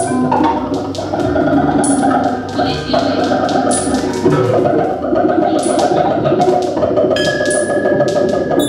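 Live experimental electronic music from laptops and electronic gear: a dense, continuous texture full of clicks, with a short high accent recurring about every two seconds.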